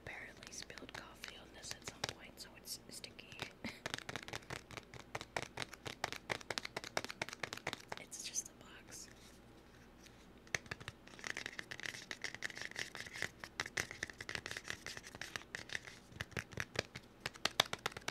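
Close-miked ASMR scratching and tapping: fast, irregular clicks and scrapes, easing off about halfway through before picking up again, with soft whispering in places.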